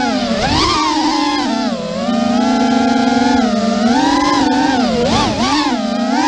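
Electric whine of a QAV210 racing quadcopter's EMAX 2600kV brushless motors and 5-inch three-blade props in fast flight, its pitch rising and falling with the throttle. The pitch dips about two seconds in and wobbles quickly up and down near the end.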